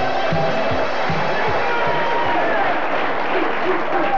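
Studio audience clapping over the show's theme music, which has a regular drum beat. The beat fades out about halfway through while the applause goes on.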